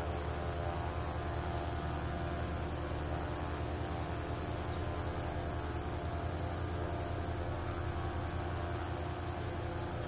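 Chorus of crickets, a continuous high-pitched trill that holds steady throughout, over a low steady hum.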